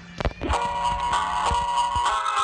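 A few brief knocks, then background music comes in about half a second in: a steady track of held notes.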